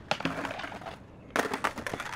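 Skateboard grinding along a ledge, a short scrape, then several sharp knocks and clatters about a second and a half in as the board hits the asphalt and the skater bails and runs out on foot.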